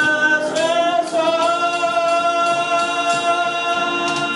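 A male vocalist sings through a microphone over electronic keyboard accompaniment, with a small hand shaker keeping time. He holds one long note from about half a second in until near the end.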